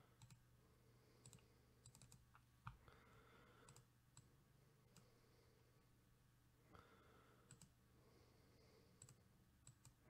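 Faint, scattered computer mouse clicks and keyboard taps over near silence.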